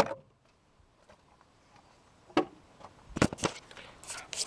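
A mostly quiet stretch broken by one sharp knock about halfway through and two quick clunks shortly after: handling knocks.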